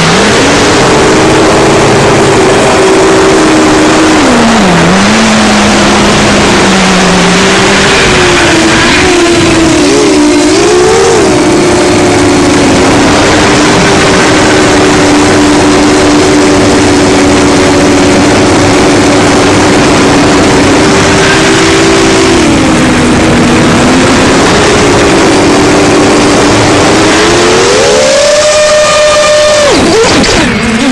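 Seven-inch FPV quadcopter's Racerstar BR2507S brushless motors and HQ 7x4x3 three-blade props heard from the onboard camera: a loud whine of several close tones that dips and wavers with throttle. The pitch climbs sharply near the end, then cuts back, over a steady rushing noise.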